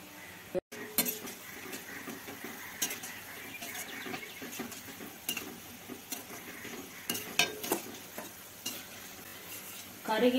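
Chana dal dough pieces deep-frying in hot oil in a stainless steel kadai, a steady sizzle, while a metal slotted spoon stirs them and clinks against the pan now and then. The sound drops out completely for a moment about half a second in.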